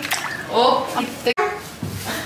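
Short wordless voice sounds, broken by a sudden brief dropout a little past one second in.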